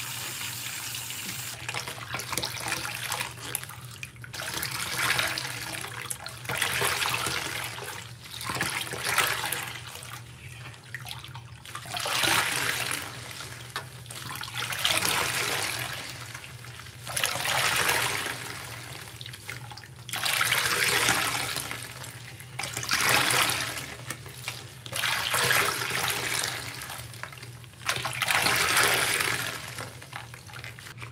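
A tap running into a stainless steel sink, then a soaked sponge squeezed and rinsed over and over by rubber-gloved hands, one wet, squelching squeeze about every two to three seconds.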